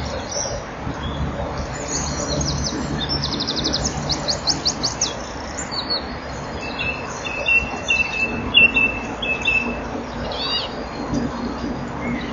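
Small bird singing: a fast trill of high, sweeping notes in the first half, then a thin, steady high note and a short call near the end, over a steady low hum and hiss.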